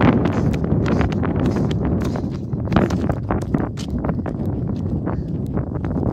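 Footsteps on an asphalt path, heard as a string of irregular clicks, over a steady low rumble on the microphone.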